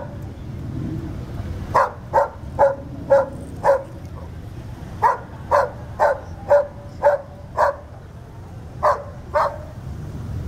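A dog barking repeatedly, in runs of short barks about two a second with pauses between the runs, over the low rumble of idling cars.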